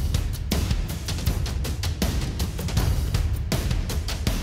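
Drum loop playing back through a FabFilter Pro-MB multiband compressor, with a heavy low end under a run of sharp hits. Its high band is lifted, and downward compression pulls those highs back down whenever a snare hit brings them.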